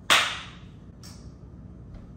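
A single sudden, sharp crack that dies away within about half a second, then a much fainter, shorter one about a second later.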